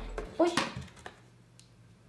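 A woman's short surprised exclamation, "Oj!", about half a second in, then near quiet.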